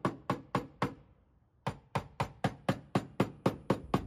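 Blending hammer lightly tapping down the crowns (high spots) on a Honda Accord's dented rear quarter panel in paintless dent repair: quick, even taps about four a second, with a brief break a little after one second in.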